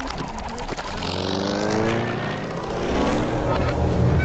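A motor-like sound, most likely a cartoon sound effect: a brief rapid rattle, then a revving whine that rises in pitch twice.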